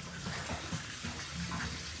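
Water running steadily in an outdoor stone-walled water feature, with a few faint footfalls on tile.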